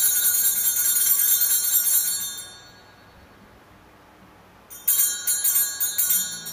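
Altar bells (sanctus bells) shaken to mark the elevation of the chalice after its consecration at Mass. A long jingling ring fades out about two and a half seconds in, and a second ring starts near the end.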